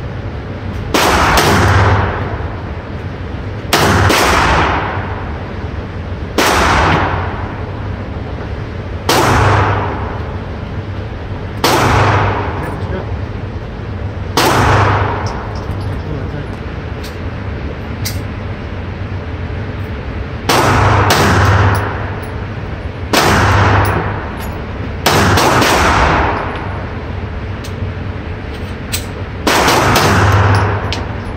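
A Glock 42 pistol firing .380 ACP BluCore rounds in slow fire: about ten shots, two to three seconds apart, with a longer pause in the middle. Each crack rings on for about a second in the indoor range. The pistol cycles through them without a malfunction.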